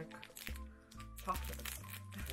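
Wrapper of a small Freddo chocolate bar crinkling as it is torn open by hand, over background music with steady held chords and a changing bass line.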